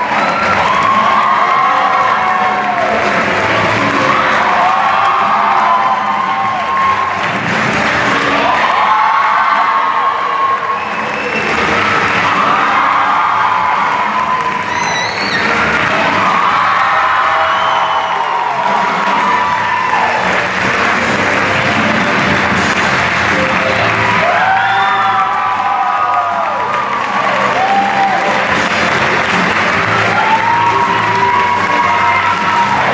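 Audience applauding and cheering over music, the clapping and the music continuing throughout.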